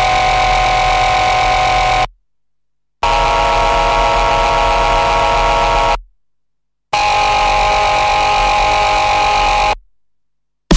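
Moped engines running at a steady pace while riding, heard in three cuts of about three seconds each. Each cut holds one even drone and starts and stops abruptly, with total silence between them.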